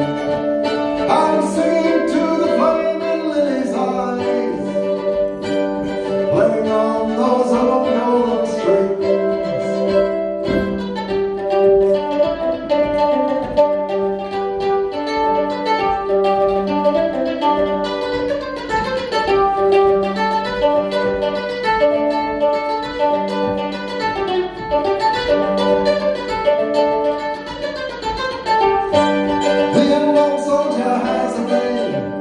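Mandolin playing an instrumental passage of a folk song, a steady run of plucked notes.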